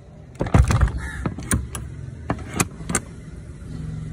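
An old painted door being pulled shut with a clattering knock about half a second in, followed by a series of sharp metal clicks and rattles from its iron sliding bolt and a steel padlock as it is being locked.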